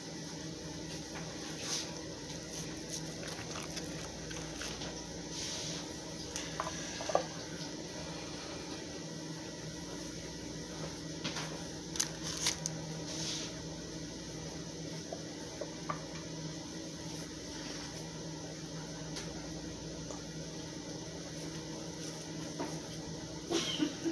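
Soft squishing of a raw ground-beef mixture being shaped into balls by hand over a steel bowl, with scattered small clicks. A steady low hum runs underneath.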